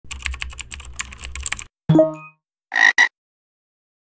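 Intro sound effects: quick computer-keyboard typing for about a second and a half, a short low pitched tone, then a two-part frog croak.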